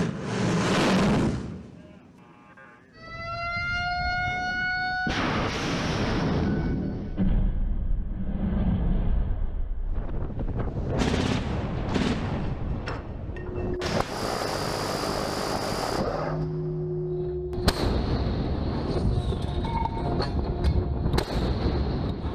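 A ship-launched missile leaving a destroyer's forward vertical launch system: a loud roaring blast lasting about two seconds at the start. Later come several sharp naval gun shots over a steady noisy background.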